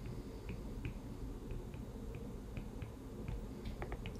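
Stylus tip tapping and ticking on a tablet's glass screen while numbers and units are handwritten. It is a string of faint, light clicks, about three a second, coming closer together near the end.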